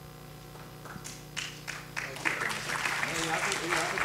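Audience applause: a few separate claps about a second and a half in, swelling into steady full applause from about two seconds in.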